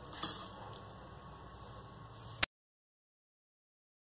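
A short knock about a quarter second in, then faint room noise, ending a little past halfway in a sharp click as the sound cuts out to dead silence, the mark of an edit in the audio track.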